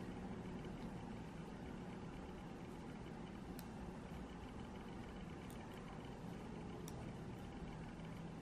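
Faint steady low hum of background noise, with a few soft clicks of knitting needles as stitches are worked, about three clicks spread through the middle and later part.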